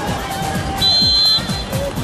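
Background music with a steady beat, and about a second in a single short blast of a referee's whistle, signalling the kick-off.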